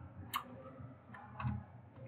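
A few faint computer keyboard key clicks, three short taps spread over the two seconds, as a command is entered at the prompt.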